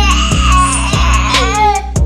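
A baby crying: one long cry, then a shorter one near the end, over background music with a steady beat.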